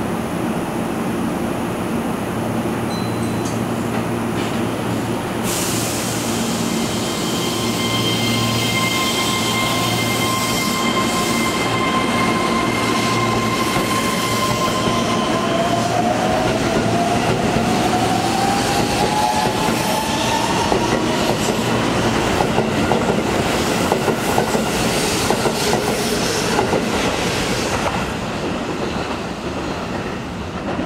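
Keihan 3000 series electric train pulling out of the station. A hiss starts about five seconds in, then steady electric tones sound and the motor whine rises in pitch as the train accelerates. Near the end the wheels click over the rail joints as the cars pass, and the sound falls away.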